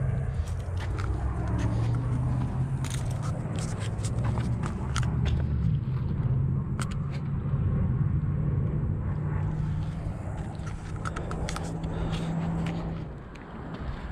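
A low engine drone, its pitch shifting now and then, which fades away about a second before the end, with scattered light clicks and scrapes over it.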